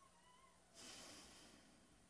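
Near silence: quiet room tone, with a faint brief squeak near the start and a soft hiss about a second in.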